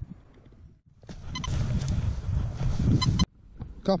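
Quest Pro metal detector sounding two brief target tones about a second and a half apart, signalling a buried metal target, over a rough rustling noise. The sound starts and stops abruptly around them.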